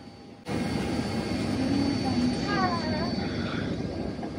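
Steady airliner cabin noise inside a Boeing 767, with a faint high steady whine over it, starting abruptly about half a second in. A voice is heard briefly in the middle.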